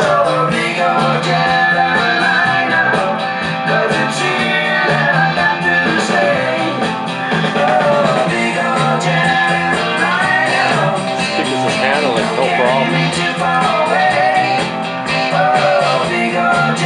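A rock song with singing and guitar, played loud on a vintage Marantz receiver through late-1970s Sansui speakers and picked up in the room.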